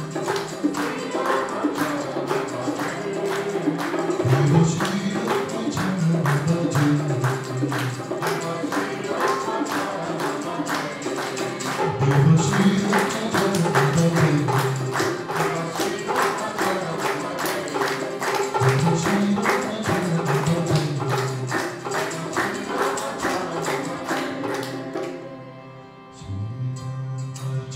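Devotional bhajan singing over fast, steady jingling hand percussion. Long low sung phrases rise and fall in pitch about every seven seconds. The music dips away briefly near the end.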